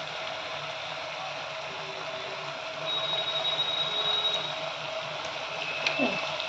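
Mutton frying in an aluminium pressure cooker: a steady sizzle with a steady hum under it, and a high thin whine for about a second and a half in the middle.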